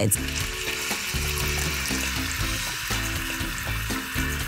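Flour-dusted pork chunks searing in hot oil in an enameled Dutch oven: a steady, even sizzle.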